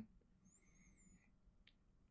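Near silence: room tone, with a faint, brief high whistle-like sound about half a second in and a soft click near the end.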